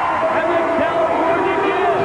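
Wrestling arena crowd noise right after a pinfall three-count, with a man's drawn-out voice over it.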